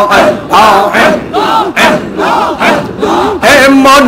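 Men chanting zikir together, a short forceful syllable repeated about twice a second in a driving rhythm, amplified through microphones with the crowd joining in. Near the end a lead voice starts a held sung line.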